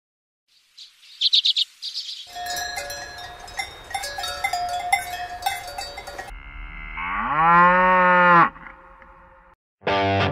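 Cowbells clanking irregularly, then one long cow moo, starting about six seconds in, that rises in pitch and holds before stopping. A few short high chirps come first.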